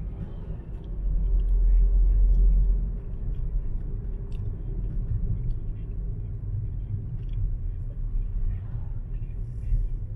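Low road and engine rumble of a car driving slowly along a city street, swelling into a louder deep rumble from about one to three seconds in.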